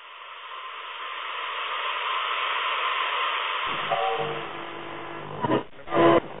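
A steady hiss of static, narrow in range like sound through a radio, fades in and runs on. About two-thirds of the way through, pitched tones come in beneath it, and two short loud bursts come near the end.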